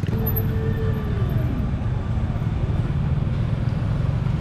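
Motorcycle engine passing close by, its pitch falling as it goes past, over a steady low rumble of street traffic.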